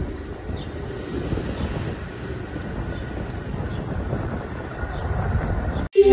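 Outdoor street ambience: a steady low rumble, with faint short high chirps every second or so.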